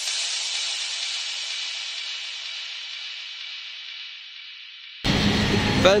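The tail of an electronic dance track: after its last beats, a steady hiss fades slowly over about five seconds, then cuts off suddenly to outdoor street noise.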